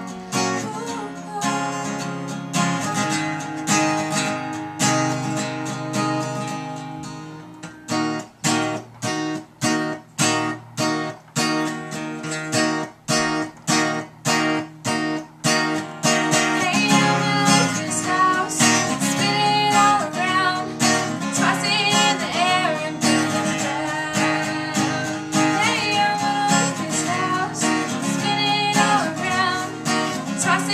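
Klema Klementine acoustic guitar strummed with a capo on. In the middle stretch the strumming turns to short, choppy strokes about twice a second. From about halfway a girl's singing voice comes in over the chords.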